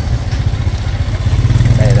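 Small motor scooter engine running at low speed close by, a steady low drone that grows a little louder near the end.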